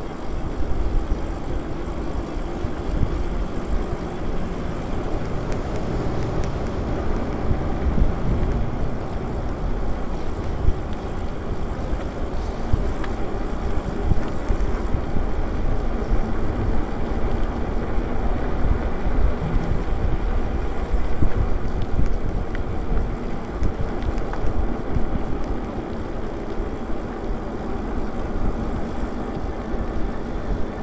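Wind buffeting the microphone while riding a fat-tyre e-bike: a steady, rough low rumble, along with the bike's road noise.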